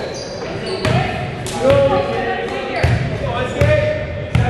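A volleyball being struck about four times during a rally, sharp smacks echoing around a gymnasium, with players calling out between the hits.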